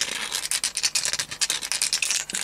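Hand deburring tool scraping the cut edge of a brass plumbing fitting, a quick, irregular run of short scraping strokes as the burr left by parting off is removed.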